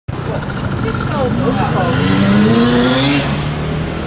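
Motocross bike engines revving hard, several at once; one rises steadily in pitch for about two seconds, then drops back to a steadier drone.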